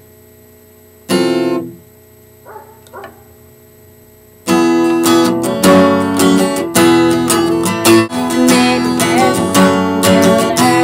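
Acoustic guitar: one short strum about a second in, a couple of light plucks, then steady strummed chords from about halfway through.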